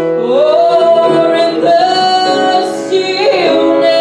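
A woman singing a slow melody in long held notes with piano accompaniment, her voice sliding up into a sustained note about half a second in.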